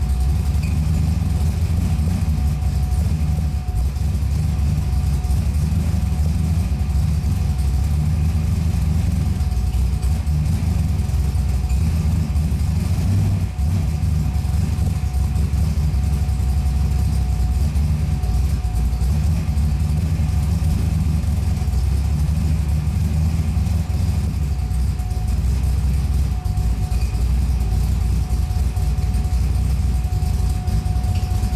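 V8 engine of a V8-swapped Mazda Miata idling steadily, an even deep rumble with a thin steady tone over it.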